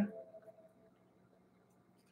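The last of a woman's word trails off, then near silence: room tone with a faint steady hum.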